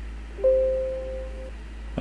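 Windows notification chime: a short two-note electronic tone about half a second in that fades away over about a second, signalling that a completed operation's message box has popped up. A steady low hum runs underneath.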